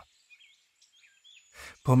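A pause in a man's narration, filled by faint bird chirps and a thin, steady, high tone over a quiet nature background. The narrator takes a breath and starts speaking again near the end.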